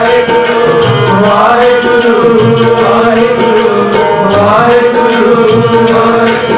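Sikh kirtan music: harmonium playing a repeating melodic phrase over a steady held note, with tabla keeping a steady rhythm.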